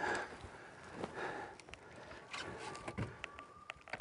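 An angler breathing hard in short puffs, about one a second, while straining against a big fish on a bent rod, with a few light clicks late on.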